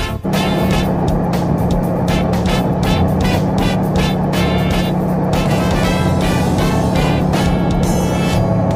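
Steady drone of a propeller airplane's engine inside the cockpit, with rhythmic music playing over it. The drone starts a moment in, as the scene changes.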